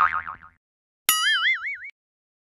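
Two cartoon 'boing' sound effects with a wobbling pitch. The first fades out about half a second in. The second starts with a click just after a second in and lasts under a second.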